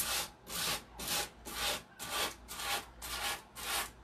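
A 120-grit sanding block rubbed in short, one-way strokes over the edge of a painted wooden tabletop, about two strokes a second, cutting the overhanging decoupage paper off cleanly at the edge.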